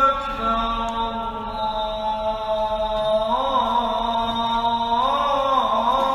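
A man's solo chanted recitation, holding long drawn-out notes with slow ornamented bends in pitch.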